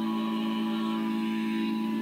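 A small vocal ensemble singing slowly, holding a sustained chord that shifts to a new one at the end.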